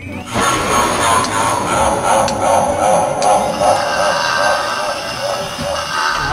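Loud intro soundtrack: a dense, sustained noisy wash with steady high ringing tones, starting abruptly just after the start.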